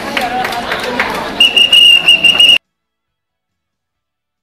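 Street crowd noise with voices, then about a second and a half in a loud, shrill whistle sounds in short, broken blasts for about a second. It cuts off suddenly into silence.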